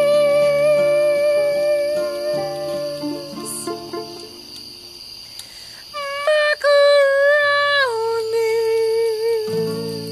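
A woman singing long, drawn-out notes of a slow song: one held note that fades out about three or four seconds in, then another starting about six seconds in that drops to a lower pitch and is held to the end. Steady lower accompaniment notes sound underneath and shift in steps.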